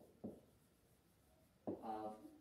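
Faint scratching of a pen writing on an interactive whiteboard screen as words are written out by hand.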